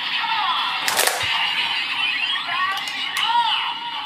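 Kamen Rider transformation belt toy playing its electronic standby music and voice effects through its small speaker, thin-sounding with no bass, with a sharp click of the belt's parts about a second in.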